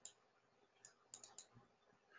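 Near silence, with a few faint, short clicks a little past the middle.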